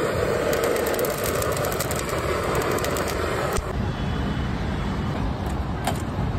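Handheld gas torch flame hissing steadily as it lights charcoal in a grill, stopping suddenly about three and a half seconds in. Low traffic rumble continues underneath, with a few sharp clicks.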